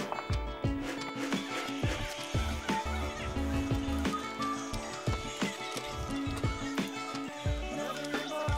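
Instrumental background music: held notes over a bass line, with light percussion.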